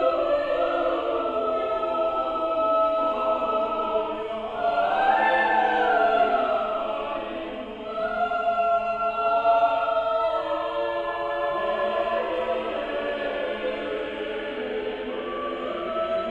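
Mixed church choir singing a slow choral piece in sustained, overlapping parts, easing briefly just before halfway and swelling again.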